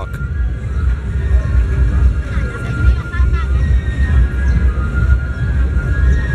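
Loud music with a heavy bass, playing over the chatter of a dense street crowd.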